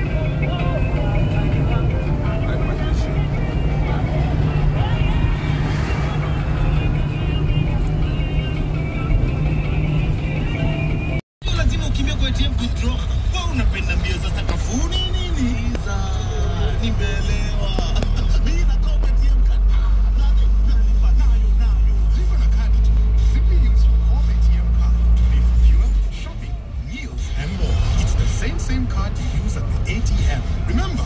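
A car's engine and road noise heard from inside the moving vehicle, with the sound cutting out for a moment about eleven seconds in. A deep steady drone swells from about eighteen seconds in and stops suddenly about four seconds before the end.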